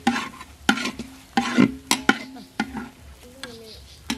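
A spatula scraping and knocking against a pan during stir-frying, in repeated strokes about twice a second, with food sizzling underneath. The strokes thin out over the last second or so.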